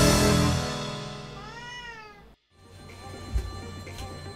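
A single cat meow, rising then falling in pitch, about one and a half seconds in, over music that is fading out. After a brief cut comes quieter room sound with one short knock.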